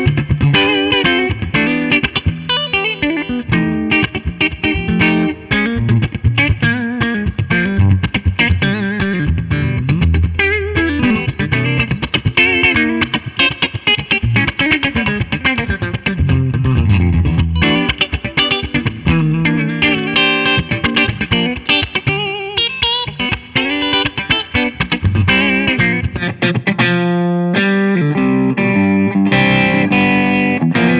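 Gibson Memphis ES-Les Paul semi-hollow electric guitar, with its PAF-style humbuckers on both pickups together (middle toggle position), played through an amplifier. It plays a continuous passage of quick single notes and chords, with a held chord near the end.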